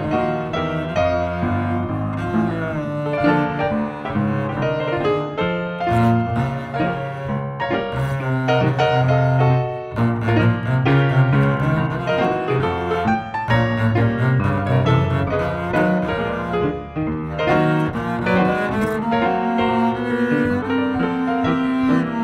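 Double bass played with the bow (arco), sustained low notes over piano accompaniment.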